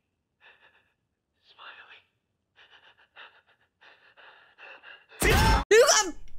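Faint whispered dialogue, then about five seconds in a sudden loud burst and a woman's high startled yelp at a horror-film jump scare, breaking into a laugh.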